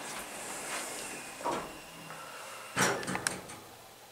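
Elevator cab doors sliding shut with a soft whoosh, then a sharp clunk about three seconds in with a couple of lighter clicks after it.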